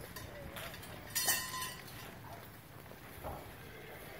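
Hay hook and rope hoist lifting a load of loose hay off a wagon: a loud, short rustling and scraping burst with a thin squeak about a second in, then a smaller knock near the end, over faint voices.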